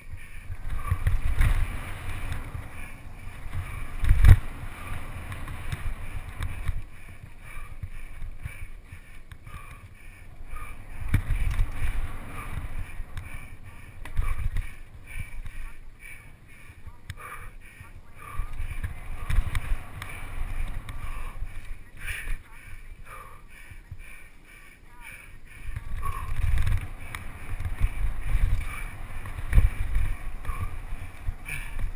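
Mountain bike ridden down a dirt singletrack, recorded on a mounted action camera: wind rumbling on the microphone in gusts that swell and fade, with knocks and rattles from the bike over the bumpy trail, one sharp knock about four seconds in.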